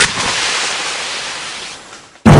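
A sudden bang followed by a hissing rush of noise that slowly fades over about two seconds, like a blast sound effect.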